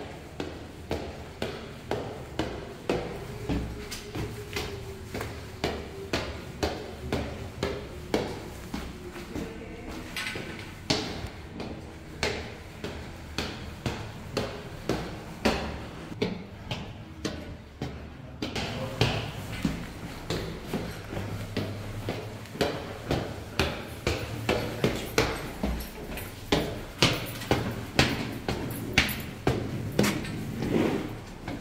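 Footsteps climbing stone stairs at a steady pace, about two steps a second.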